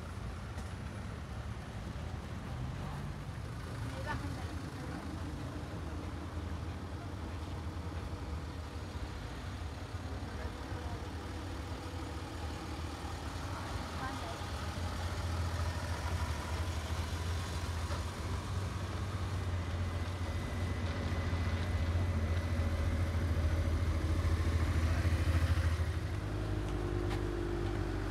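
Engines of slow-moving parade floats and escort vehicles passing close by, a steady low rumble that grows louder through the second half and eases off about two seconds before the end.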